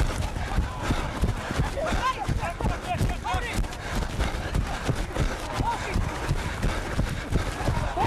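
A rugby league referee's running footsteps on grass, a steady rhythm of low thuds heard close through his body-worn microphone, with short shouted calls from players.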